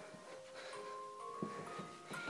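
Faint music of held notes that change pitch a few times.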